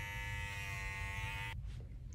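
Kenchii Flash dog-grooming clipper with a #30 blade running steadily as it shaves the hair from the V between a dog's paw pads, then cutting off about one and a half seconds in.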